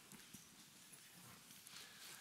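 Near silence: room tone with a few faint knocks.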